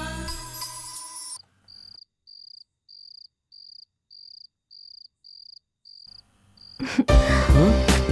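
A cricket chirping at a steady high pitch, about two short chirps a second, after music fades out in the first second or so; loud music with a heavy bass beat comes in near the end.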